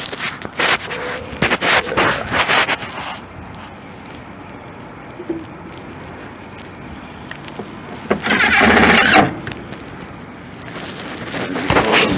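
Knocks and clicks as a control box is handled against a sheet-metal panel. About 8 s in comes a one-second run of a power drill driving a mounting screw into the panel.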